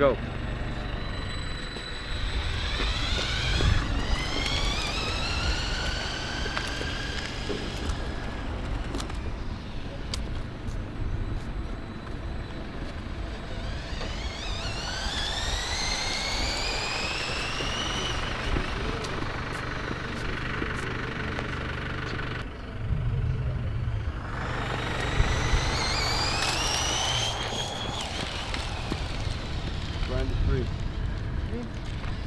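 Electric drive motors and gears of a motorized LEGO Technic 42172 McLaren P1 whining as the car accelerates away. The pitch climbs three times, about two, fourteen and twenty-four seconds in, with each rise lasting several seconds, over a low rumble.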